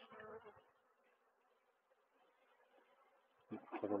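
Faint, steady buzzing of a honeybee colony around an opened hive, with a brief low sound in the first half second.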